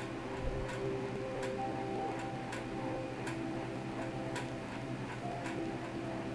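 Soft background music of slow, sustained tones changing pitch every second or two, with faint ticking clicks about once a second.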